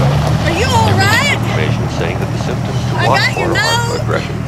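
A woman's high-pitched, wavering cries, once about half a second in and again near the end, over the steady low hum of a car engine heard inside the cabin.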